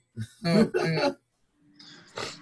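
Short vocal sounds from a person: three brief voiced bursts in the first second, then quiet.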